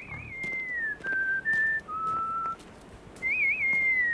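A person whistling a tune in clear single notes. It opens with a quick warble that slides down, steps between a few held notes, and warbles again near the end.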